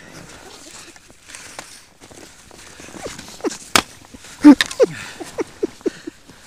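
Snow crunching and clothing rustling as a skier struggles in deep powder. About halfway through, a man laughs in short bursts, loudest near the end, with a couple of sharp knocks.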